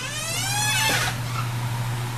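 A person yelling: one drawn-out shout that rises in pitch and breaks off about a second in, over a steady low hum.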